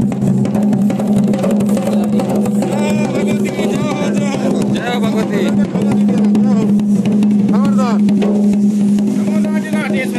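Drums beaten in a fast, dense rhythm, with voices singing and calling over them and a steady low hum underneath. This is the drumming of a Garhwali mandaan, the ritual in which the goddess is invoked.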